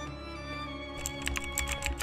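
Computer keyboard typing, a quick run of key clicks starting about a second in, over background music.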